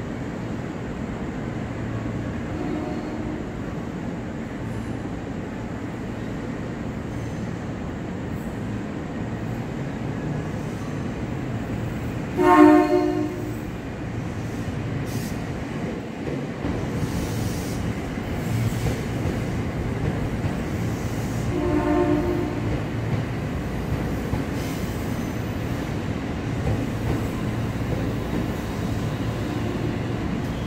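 KRL commuter electric trains at a station platform: one loud horn blast about a second long roughly midway through, then a shorter, softer horn about ten seconds later, over the steady rumble of a train running in alongside the platform.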